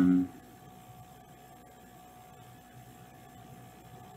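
A person's held, steady-pitched 'mmm' hum, cutting off a moment after the start, then quiet room tone with a faint steady electrical hum.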